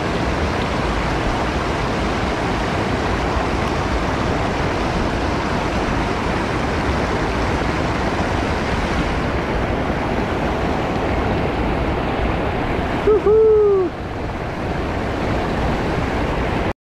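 Loud, steady rushing of whitewater pouring over a low weir. About thirteen seconds in, a single short pitched sound, rising then falling, briefly rises above the water.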